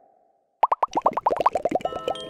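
Cartoon-style plop sound effects for an animated logo: one pop fades out at the start, then after about half a second a rapid run of short pitched pops follows, about a dozen a second, with chiming tones joining near the end.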